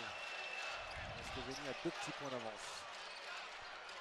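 Arena crowd murmur with a basketball bouncing on the hardwood court during live play, and a faint voice about a second and a half in.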